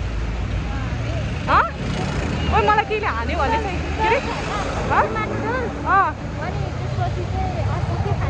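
Street traffic: a steady low rumble of passing motorcycles and cars, with short bursts of voices over it.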